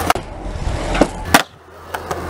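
Skateboard on concrete: urethane wheels rolling, broken by a few sharp clacks of the board. The loudest clack comes about halfway through, and the rolling sound drops away just after it.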